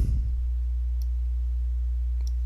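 Steady low electrical hum, a stack of even tones at the bottom of the range, with a single faint click about halfway through.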